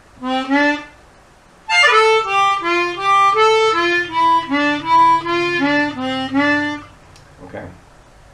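Chromatic harmonica played blues-style in its low register. A short two-note phrase comes first, then after a pause about five seconds of quick single notes stepping down and back up, played as a lick on the lowest holes.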